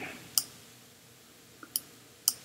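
Computer mouse button clicks while an image is being selected and resized on screen: two sharp clicks about a second and a half apart, the second just after a fainter one.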